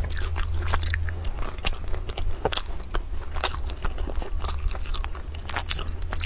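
Close-miked crisp crackling of a flaky egg-yolk pastry being pulled apart and bitten, with chewing: many small sharp crackles throughout.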